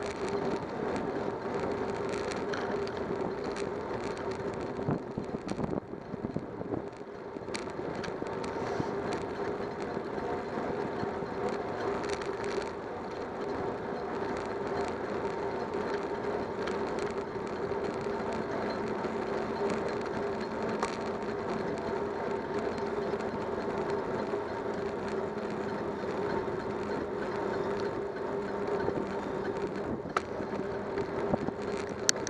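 Steady rolling noise of a bicycle ridden on pavement, picked up by a camera mounted on the bike: a continuous rumble with a constant hum and scattered clicks and rattles.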